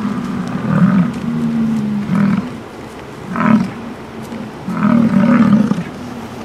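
American bison bellowing: a series of deep, rough bellows, one after another.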